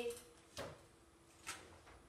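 Two faint clicks of a computer mouse on the desk, about a second apart, over quiet room tone.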